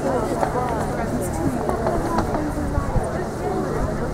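Spectators chatting, many voices overlapping at once, with a few short knocks.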